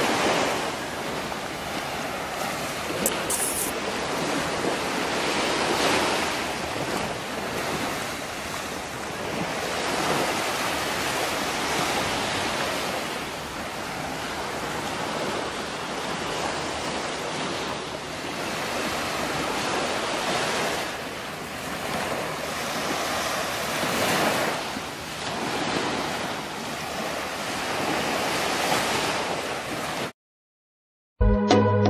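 Small waves breaking and washing up a sandy beach, the surf noise swelling and fading every few seconds, with wind buffeting the microphone.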